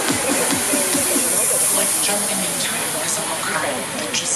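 Electronic dance music from a DJ set over the festival sound system: the thumping kick drum drops out about half a second in, leaving a high hissing noise sweep that fades over the next couple of seconds. Crowd voices come in near the end.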